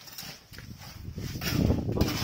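A hand trowel scraping and tapping on wet cement mortar, in irregular strokes. The sound gets louder and heavier towards the end.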